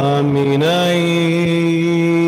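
A man's voice singing a Chaldean liturgical chant, holding long steady notes; the pitch slides up about half a second in and then holds.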